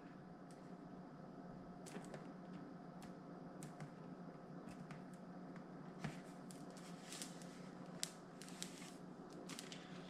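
Faint crackling and ticking of thin plastic protective film being peeled off a helmet's clear visor, a scattering of small clicks over a low steady hum.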